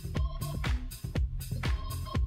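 Disco-style house music from a DJ mix, with a steady four-on-the-floor kick drum at about two beats a second under hi-hats and a repeating synth line.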